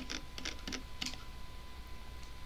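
A few light clicks from a computer keyboard and mouse, about five in the first second, over a faint steady hum.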